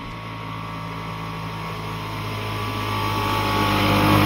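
The small water-cooled 200 cc single-cylinder two-stroke engine of the Maikäfer prototype, running at a steady speed and growing louder as the little car approaches.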